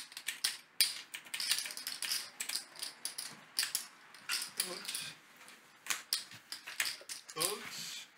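Poker chips clicking and clacking together in quick, irregular runs as players handle and shuffle their stacks at the table.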